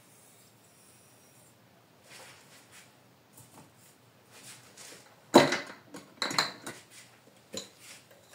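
Faint hiss of granulated sugar pouring into a glass bowl of eggs. About five seconds in comes one sharp, loud clack, then several lighter knocks and clinks of kitchen utensils being handled.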